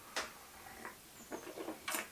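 Faint sipping and mouth sounds of a man drinking coffee from a small espresso cup: a short sip, then a few small lip smacks and clicks as he tastes it, the sharpest one near the end.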